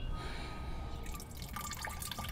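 Faint water dripping and trickling, with scattered small drips over a low, even background.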